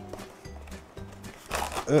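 Faint handling of a cardboard retail box as a power strip is drawn out of it, followed near the end by a man's disgusted groan, "ugh."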